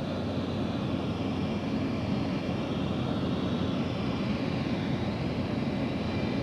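Jet aircraft engines running, a steady, even rush of engine noise.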